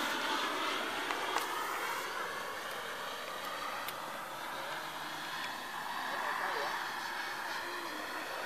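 Radio-controlled model jet flying overhead: its engine whine is steady, and its pitch slowly bends up and down as the plane passes. It fades a little after the first two seconds.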